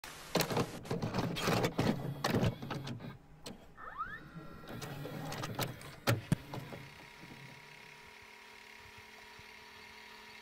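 A video cassette recorder taking in a tape: a run of mechanical clicks and clunks, a short rising motor whine about four seconds in, a few more sharp clicks, then a faint steady hum with a low held tone from about seven seconds.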